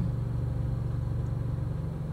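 Car engine idling, heard from inside the cabin as a steady low hum.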